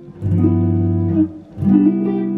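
Telecaster-style electric guitar playing two chords in turn, each ringing about a second, from the jazz two-five-one progression of D minor 7, G13 and C major 7.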